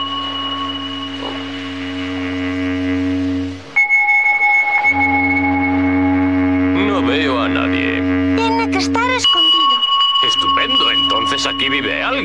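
Background music of held synthesizer chords over a low drone. The chord changes about four seconds in and returns to the first chord about nine seconds in, with short wavering voice-like sounds just before the second change.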